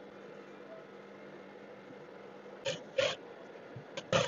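A faint steady hum in a quiet room, then two short rustles about three seconds in as fabric pieces are handled.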